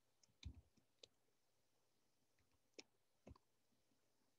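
Near silence with a few faint, isolated clicks from a computer keyboard and mouse being worked.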